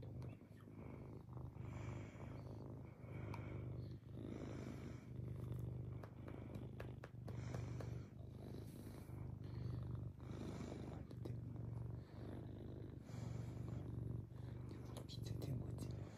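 Domestic tabby cat purring while being stroked, a steady low rumble that swells and eases with each breath, about every second and a half.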